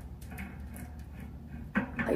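Faint clicks of a small screw being turned by hand into the top tier of a metal wire fruit basket, over a low steady hum.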